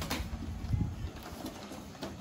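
Pigeons cooing, low and soft, loudest about a second in.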